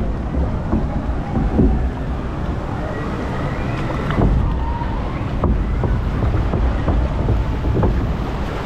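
Water rushing along a log flume trough around the floating log boat, with wind buffeting the microphone in a steady low rumble.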